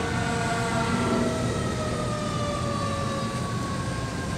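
Fire engine siren sounding one long wail whose pitch falls slowly, over a low rumble of idling traffic.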